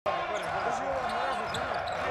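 Arena crowd noise with many overlapping voices, over the thud of a basketball being dribbled on the hardwood court.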